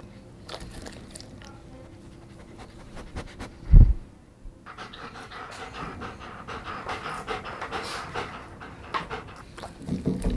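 German Shepherd panting rhythmically through the second half, after small licking clicks as it noses at crumbs on the table. A single low thump a little before the middle is the loudest sound.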